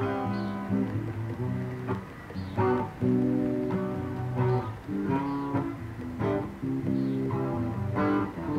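Solo acoustic guitar playing a slow song, chords strummed roughly once a second and left to ring.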